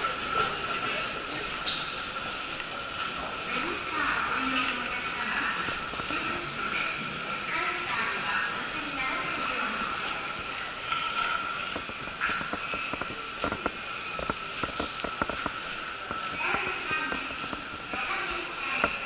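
Indistinct voices echoing through a train station corridor, over a steady high hum. A quick run of light clicks comes about two-thirds of the way through.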